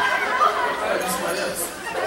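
Speech: several voices talking over one another.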